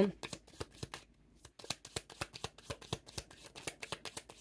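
A deck of oracle cards being shuffled by hand: a rapid run of soft card clicks and flicks, a brief pause about a second in, then more shuffling.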